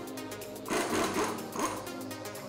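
Cordless impact wrench hammering on a wheel lug nut in one short burst of under a second, starting about two-thirds of a second in, loosening the nut so the wheel can come off.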